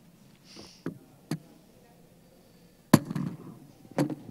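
Microphone handling noise: a short breathy hiss, then a few sharp clicks and knocks, the loudest about three seconds in with a brief low rumble after it, as a handheld microphone is picked up and readied for an audience question.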